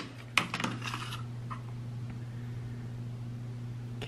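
A few light clicks of a plastic digital pregnancy test against a stone countertop in the first second, then a steady low hum for the rest.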